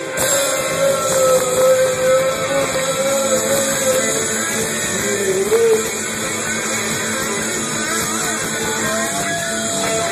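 Rock band playing live, heard from within the crowd, with an electric guitar lead holding one long note and then bending a note about halfway through.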